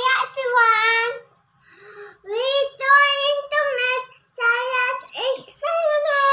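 Young children singing a short chant in several high, held phrases with brief pauses between them.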